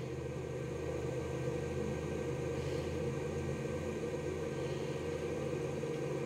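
A steady low mechanical hum with no change, as from a running motor or fan.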